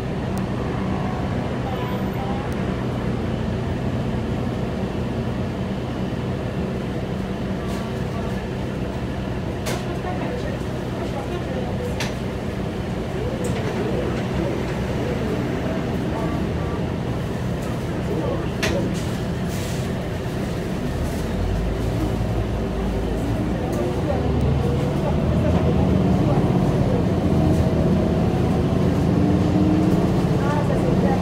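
Inside a 2012 New Flyer C40LF natural-gas transit bus under way: steady engine and drivetrain hum with road noise and a few short rattles. Over the last several seconds it grows louder and the engine's pitch rises as the bus picks up speed.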